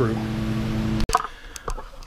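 A steady machine hum cuts off abruptly about halfway through, leaving quieter room noise with a few faint clicks.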